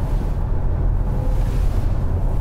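Steady low rumble of road and engine noise inside the cabin of a moving 2019 Skoda Superb, its diesel engine giving a faint hum.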